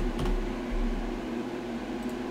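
A few computer-keyboard keystrokes right at the start as a search term is typed, then only a steady mechanical hum with a few level tones in it.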